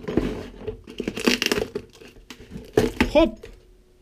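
Clear plastic wrapping film crinkling and tearing as it is pulled by hand off a cardboard parcel box, in several short bursts.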